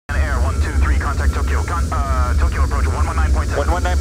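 Steady low rumble of airliner cockpit noise with hurried, overlapping voices over it, starting abruptly. A thin steady tone comes and goes over the top.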